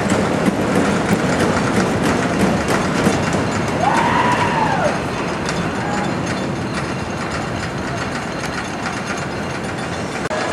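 Wooden roller coaster train rumbling and clattering along its wooden track, with a brief rising-then-falling squeal about four seconds in.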